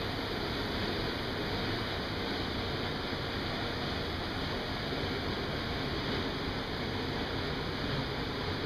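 Steady, even rushing noise of a ventilation fan running.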